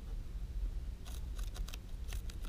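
Guinea pig biting and chewing a crisp leaf of greens: a quick run of short crunching snips about a second in, over a low steady rumble.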